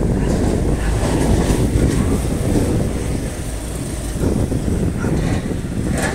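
Wind buffeting the microphone of the phone or controller in strong wind: a loud, steady, low rumble that rises and falls a little, with no tones in it.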